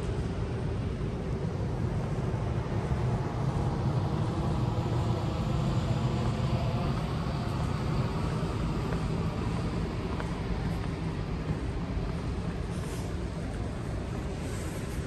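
Steady low rumble of airport background noise, swelling over the middle few seconds and easing off, with a faint whine above it.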